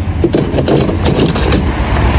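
A steady low rumble, with the crinkle of a thin plastic carrier bag being handled during the first second or so.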